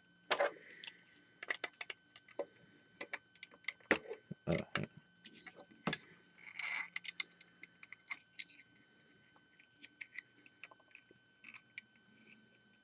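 Plastic Lego bricks of a built mech model clicking, knocking and rattling as it is handled, with a few louder knocks between about four and six seconds in.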